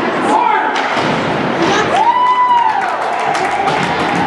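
Ice hockey game sounds in a rink: sharp knocks and thuds of sticks, puck and boards, under voices calling out. About halfway through there is one drawn-out shout.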